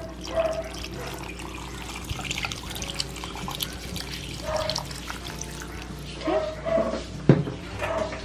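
Water poured in a stream into a metal pot of sliced pork, fish cake and chili pastes, splashing onto the ingredients for about six seconds. A single sharp knock comes near the end.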